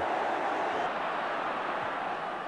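Steady murmur of a football stadium crowd, heard through an old television match broadcast.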